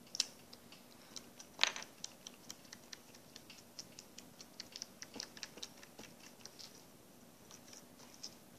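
Felt-tip marker tip being jabbed again and again into slime on a tabletop, working the ink in to dye it: quick, light, irregular taps and clicks, several a second. One tap about one and a half seconds in is louder than the rest, and the tapping dies away about a second before the end.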